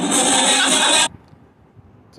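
Loud, noisy party audio played back from a phone video, crowd din over music, cutting off abruptly about a second in as the playback is paused; low room noise after.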